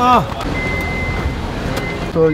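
A car's electronic warning beep, one high steady tone held for about a second, stopping, then sounding again near the end, over the steady noise of an idling vehicle.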